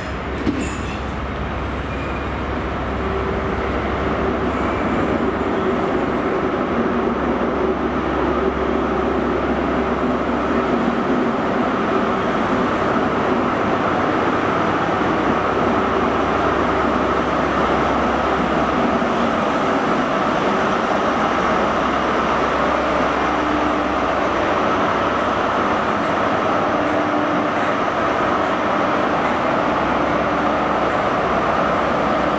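A High Speed Train's Class 43 power car draws in and passes, its MTU diesel engine running. The sound grows louder over the first few seconds as it nears, with steady whining tones over the engine noise, then the coaches roll by.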